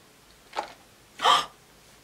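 Two short wordless vocal sounds from a woman: a faint one about half a second in, then a louder, brief voiced one a moment later.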